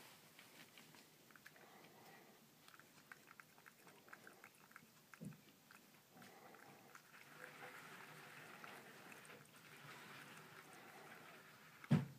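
A cat eating from its bowl, with faint crunching and chewing clicks. A soft thump comes about five seconds in, and a loud knock just before the end.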